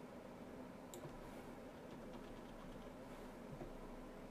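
Faint clicks of a computer keyboard's number-pad key pressed over and over, one a little louder about a second in, over a steady low hum.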